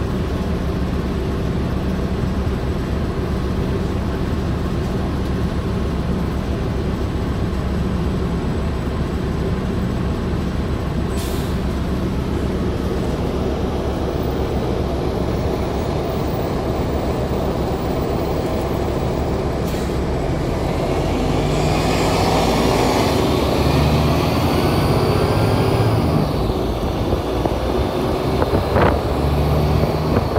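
A 2008 New Flyer transit bus's engine running steadily as the bus drives along, heard from inside the passenger cabin. About two-thirds of the way through it gets louder and a rising whine comes in as the bus accelerates, with a few knocks near the end.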